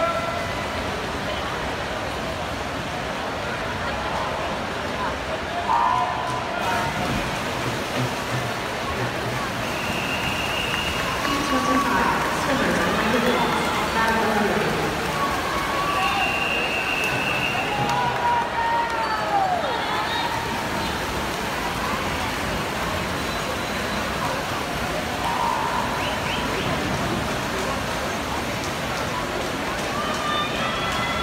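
Spectators at an indoor swim meet cheering and shouting through a freestyle sprint race: a steady din of many voices, with a few louder held shouts near the middle.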